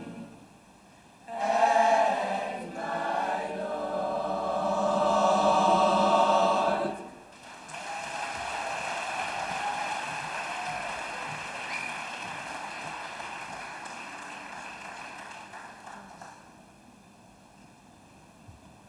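Boys' choir singing a loud closing phrase that swells and breaks off about seven seconds in, followed by about nine seconds of audience applause that fades away.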